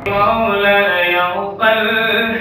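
A man's voice singing an Islamic devotional song (naat) solo, holding long sustained notes, with a short breath break about one and a half seconds in before the next phrase.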